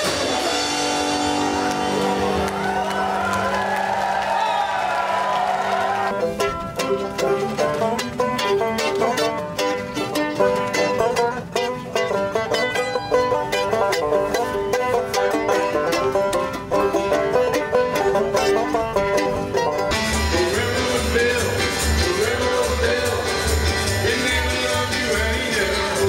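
Live acoustic string-band music cut together from several snippets, changing abruptly about six seconds in and again near the end. A quickly picked banjo fills the middle stretch, and near the end the band plays with an upright bass pulsing underneath.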